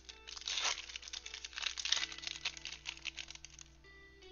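Trading-card pack wrapper crinkling and tearing as it is ripped open by hand, in quick irregular crackles that die away near the end. Background music plays steadily underneath.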